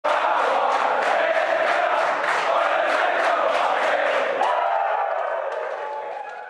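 Large crowd cheering and roaring, with rhythmic clapping about three times a second; a held tone joins about four and a half seconds in and the sound fades toward the end.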